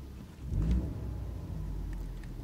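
Ford Mustang EcoBoost's turbocharged four-cylinder engine idling with its active exhaust set to quiet mode, heard from inside the cabin as a low steady rumble. It swells briefly about half a second in.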